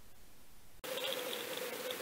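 Underwater recording: faint hiss, then a sudden cut a little under a second in to a steady buzzing hum with a fluttering high edge.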